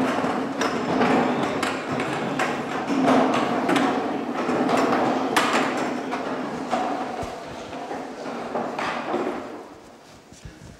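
Dozens of metal-legged plastic stacking chairs being picked up, carried and set down on a wooden parquet floor in a large hall: a continuous clatter of knocks and scrapes over a crowd's murmur, dying away near the end.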